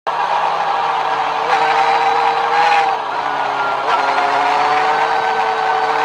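Motorcycle engine running at road speed, heard with wind and road noise on an onboard camera. The engine note drops about three seconds in, then slowly climbs again.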